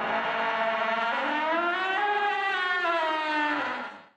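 Eerie drawn-out tone of several pitches that glides slowly up and back down before fading out near the end: the sound effect of a horror segment's intro.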